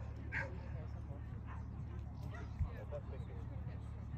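A dog barking briefly a couple of times over a steady low wind rumble on the microphone, with one short thump about two and a half seconds in.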